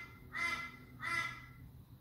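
A bird calling in the background: short pitched calls about every two-thirds of a second, the last one ending at about a second and a half.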